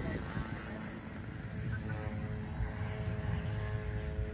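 Twin electric motors and 14x6 propellers of a Flex Innovations Twin Otter RC model plane running, a steady hum of several tones that sets in about a second and a half in.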